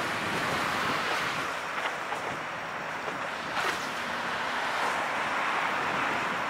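Steady rush and wash of choppy canal water churned up by passing vessels, with wind on the microphone and a brief louder surge about three and a half seconds in.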